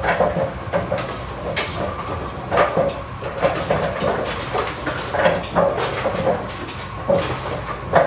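Brunswick automatic pinsetter running, with a silencer fitted to its pinwheel: steady machinery noise with irregular clunks and knocks as it handles and sets the pins.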